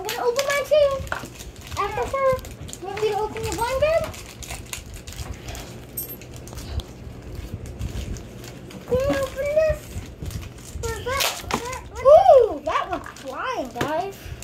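Children's voices making sounds without clear words, with one rising-and-falling vocal glide near the end. Clicks and rustles of plastic wrappers and plastic toy shells being handled come in between.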